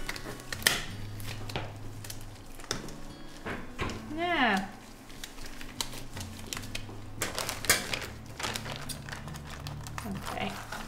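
Plastic wrapping of a sealed forensic examination kit crinkling and rustling as it is handled and opened, a run of small irregular crackles. A brief voice sounds about four seconds in.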